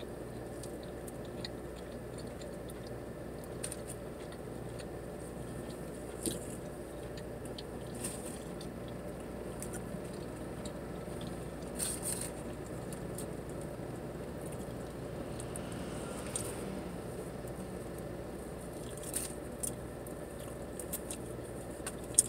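A steady low hum from a parked car's running engine, heard inside the cabin, with brief sharp sounds of eating and chewing a burrito scattered through it, a few seconds apart.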